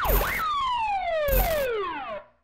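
Siren sound effect in a TV programme's opening theme. The wail rises and falls once more, then winds down in long falling glides. A short hit comes at the start and another about one and a half seconds in.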